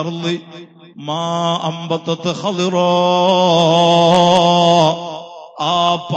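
A man chanting a devotional line in a melodic, drawn-out style, breaking off briefly near the start, then holding one long note with a wavering pitch for about two seconds before pausing near the end.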